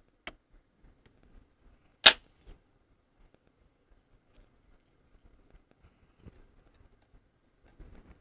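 Fly-tying scissors: a light snip just after the start, then a much louder sharp click about two seconds in, followed by faint small ticks of handling at the vise.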